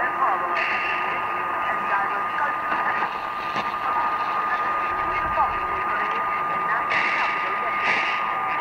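Long-distance mediumwave AM reception of All India Radio on 1566 kHz from more than 6000 km away. Faint, unintelligible speech is buried in steady static and hiss, with a constant high whistle running through it. The sound is narrow and muffled, the sign of a weak skywave signal at the edge of reception.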